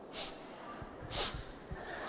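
A man sniffing sharply into a handheld microphone, twice about a second apart, acting out someone crying.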